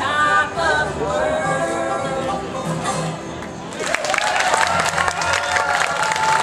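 A bluegrass band of banjo, acoustic guitar, upright bass and fiddle, with women's voices singing together, plays the last bars of a song. From about four seconds in, the audience applauds loudly.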